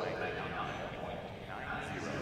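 Indistinct voices over a steady murmur of arena background noise.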